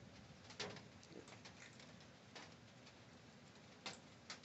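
Faint, scattered crunches and clicks of a raccoon chewing dry cat food kibble, a few soft ticks spaced irregularly over near silence.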